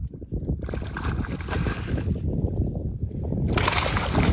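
Wind rumbling on a phone microphone with water sloshing, rising to a louder splashing rush near the end as a hooked redfish thrashes at the surface beside the boat.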